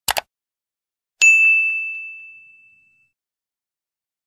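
Two quick mouse-click sound effects, then about a second later a single bell ding that rings and fades away over about two seconds.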